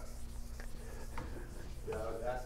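Felt eraser wiping chalk off a blackboard: a faint, soft rubbing with a couple of light taps.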